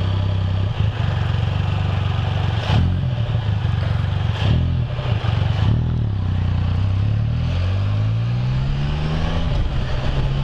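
Can-Am Spyder three-wheeled motorcycle engine idling steadily at a stop, then pulling away, its pitch rising gradually as it accelerates and levelling off near the end.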